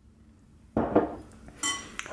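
A metal spoon knocking and scraping against a glass bowl as a spoonful of tomato sauce is put in: a scrape about three quarters of a second in, then a short ringing clink.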